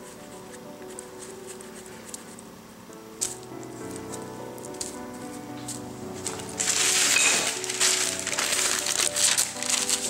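Soft background music, joined about two-thirds of the way in by loud rustling and crinkling of a sheet of parchment paper being handled and laid over a disc of dough.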